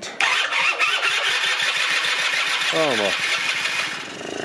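Two-stroke engine of a 1996 Rexy 50 scooter being started on starting spray, catching about a fifth of a second in and running rough and rapid for about three and a half seconds before dropping away near the end. It fires only on the starting aid, not yet on fuel from the carburettor.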